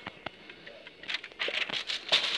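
Cardboard advent calendar door being pried and torn open: a few sharp clicks, then denser crinkling and tearing in the second half.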